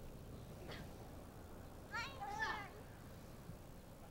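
A child's high-pitched squeal, a short cry of two quick gliding bursts about two seconds in, over faint steady background noise.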